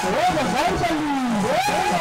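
A voice, or voices, with long sliding rises and falls in pitch, cutting across the festival music for about a second and a half.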